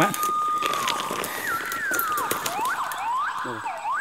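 A siren-like whistling animal call: one long steady tone that slides down in pitch about a second in, then several quick falling and rising glides, over light crackling in the undergrowth.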